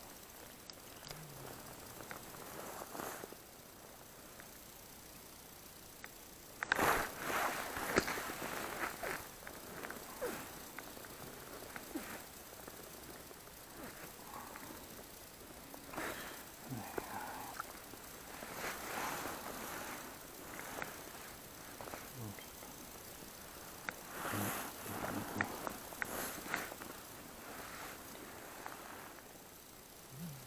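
Intermittent rustling and handling noises from an angler's clothing and ice-fishing tackle as a fish is unhooked and the short ice rod is set back over the hole. The loudest burst of handling comes about seven seconds in, with softer ones scattered through the rest.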